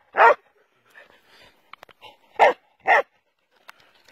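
A dog barking three short times: once at the start, then twice in quick succession about two and a half seconds in.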